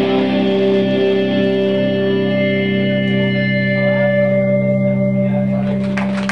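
Live rock band's distorted electric guitars holding a chord that rings on steadily at the close of a song, with a higher tone joining about two seconds in.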